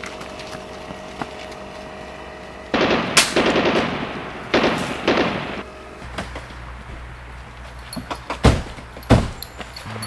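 Two bursts of rapid gunfire, each lasting about a second, then an engine running close by, with two single sharp bangs near the end.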